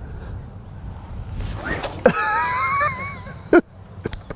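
Overhead cast with a 13 ft carp rod: a rising whoosh about a second and a half in, followed by a wavering whine for about a second and a sharp click just before the end, over steady wind rumble on the microphone.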